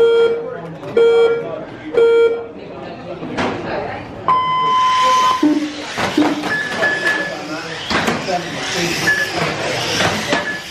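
Race start sequence from a timing system: three short beeps a second apart, then a single longer, higher start tone about four seconds in. Electric RC cars then pull away and race on the carpet track, a continuous whirring and rushing of motors and tyres with sharp clicks of cars knocking the track edges.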